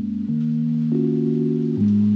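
Background music: soft, sustained instrumental chords that change every second or so.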